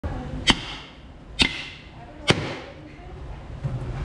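A dry brown coconut struck three times with a kitchen knife, about a second apart, to crack its shell open; each blow is a sharp crack with a short ring after it.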